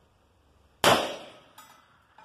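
A single shot from an Uberti replica Colt 1860 Army .44 black-powder cap-and-ball revolver, a sharp crack a little under a second in that dies away over about half a second. A fainter ringing note follows about 0.7 s later.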